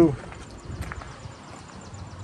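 A few soft, irregular footsteps on pavement over low outdoor background noise.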